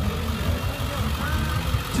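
Engine of a fire-rescue truck passing close by at low speed, a steady low rumble.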